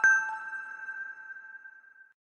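Last note of a short chime-like intro logo jingle: one bell-like chime struck once at the start, ringing on and fading away.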